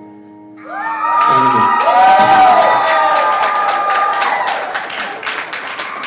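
Audience clapping and cheering, with whoops, as the last acoustic guitar chord of the song dies away. The applause starts about half a second in.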